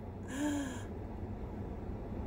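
A woman's short, breathy vocal sound, like a soft gasp, about half a second in, its voice falling in pitch. A low, steady rumble lies underneath.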